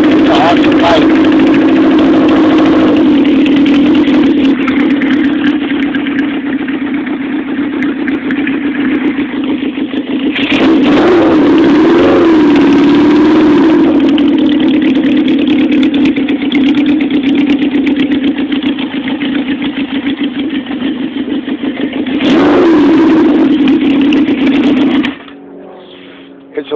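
1975 Honda CB750's air-cooled inline-four running cold, with the throttle opened up three times for louder, wavering stretches between steadier running. The engine cuts out about a second before the end. The bike is cold-blooded until it warms up.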